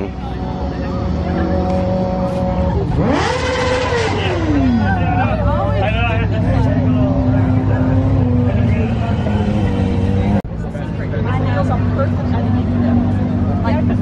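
Car engine idling, revved once about three seconds in: a quick rise in pitch and a slower fall back to idle. After a sudden cut, a steady idle continues.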